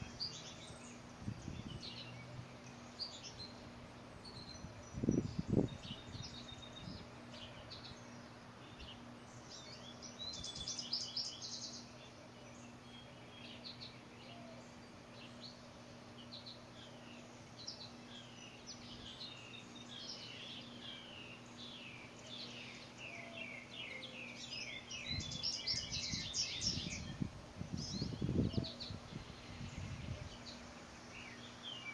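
Small songbirds chirping and singing all around, many short varied calls with quick runs of rapid chirps about ten seconds in and again near the end, over a faint steady hum. A few low muffled bursts stand out, the loudest about five seconds in.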